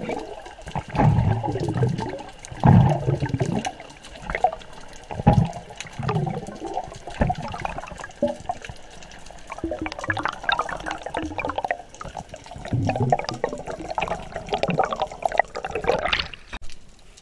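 Water sloshing and bubbling around an underwater camera in irregular surges every second or two, with bubbles rising past it; a brief splash at the very end as the camera breaks the surface.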